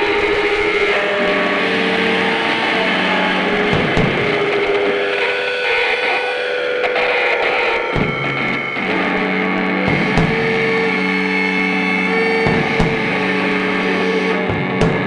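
Live electric guitar droning on long held notes through an amplifier, with a few scattered drum hits about four, eight, ten and twelve seconds in.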